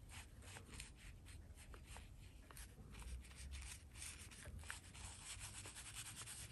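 Faint, scratchy rubbing of a soft Chinese painting brush stroked repeatedly over paper, in many short strokes, over a low steady room rumble.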